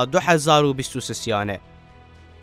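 Speech: a man narrating over soft background music. The voice stops about one and a half seconds in, leaving only the quiet music.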